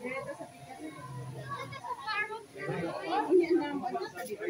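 Background chatter of several people talking at once, with children's voices among them.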